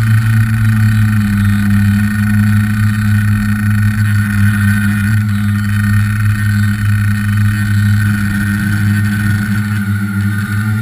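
Tricopter's motors and propellers running steadily in flight, heard up close from a camera mounted on the frame: a loud, even drone with a strong low hum and a higher whine.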